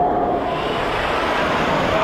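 Water rushing down the entry of a ProSlide TurboTWISTER enclosed waterslide as the rider sets off: a loud, steady wash of noise.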